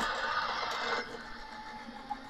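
Crafter's Companion Gemini Junior electric die-cutting machine running as its motor rolls the cutting-plate sandwich through. The motor stops suddenly about a second in as the plates finish their pass.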